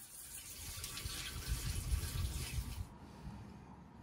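Water poured from a jug into a tractor radiator's filler neck, a steady splashing fill that stops about three seconds in. The radiator is being filled to test a repaired leak.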